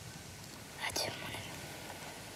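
A girl's soft whispered speech: one short whispered word or breath about a second in, over faint steady background hiss.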